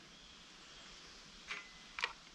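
Near silence: faint outdoor background hiss, with one small click about a second and a half in and another at the very end.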